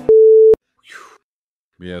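A single loud, steady electronic beep, one unwavering tone about half a second long that cuts off abruptly.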